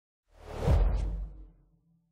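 Logo sting sound effect: a single swelling whoosh over a deep low boom, which rises from silence, peaks just under a second in and fades away by about a second and a half.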